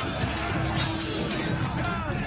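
Film soundtrack music mixed with shattering, debris-like sound effects.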